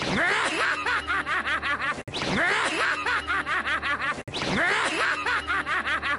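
An anime character's rapid, cackling laugh: the same roughly two-second laugh clip is played on a loop, three times in a row.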